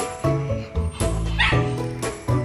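Background music, with a Rottweiler giving a brief high-pitched cry about one and a half seconds in.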